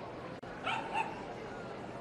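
Small dog giving two quick, high-pitched yaps about a second apart, over a steady background of crowd chatter.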